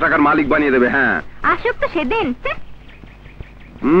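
Speech only: film dialogue in two phrases, then a short pause.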